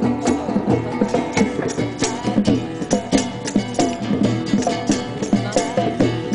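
Music with a busy, steady percussion beat under a melody.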